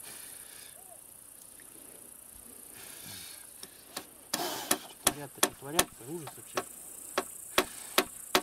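Hammer striking nails into a wooden pole: a series of sharp knocks, about two a second, beginning about four seconds in, over a steady high insect hum.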